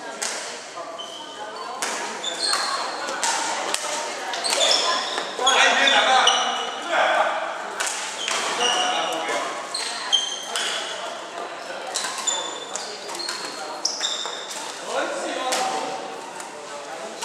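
Badminton rally on a wooden hall floor: repeated sharp racket strikes on the shuttlecock and many short, high shoe squeaks, echoing in the large hall.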